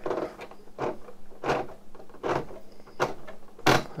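Hand-turned plastic gear train of a clone-brick elevator mechanism clicking and clacking, about one sharp click every three-quarters of a second with fainter ticks between. The nearly 20 meshing gears run stiffly, and the loudest click comes near the end, just as the lift snags.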